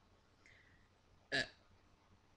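Quiet room tone, broken a little over a second in by a man's single short, clipped vocal "uh".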